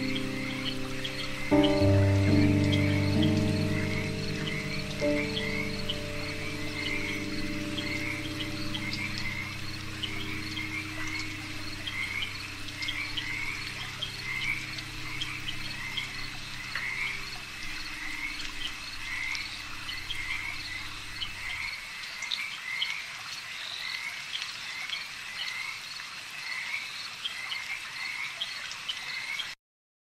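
A frog chorus calling in quick repeated short calls, under ambient music of held low chords. A new chord comes in loudly about a second and a half in, and the music stops about 22 seconds in, leaving only the frogs until everything cuts off just before the end.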